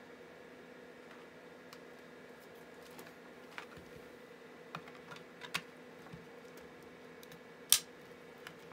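A flat-head screwdriver prying at the glued seam of a Compaq Concerto battery pack's plastic case: scattered small clicks and ticks, then one loud sharp crack near the end as the plastic gives. A faint steady hum runs underneath.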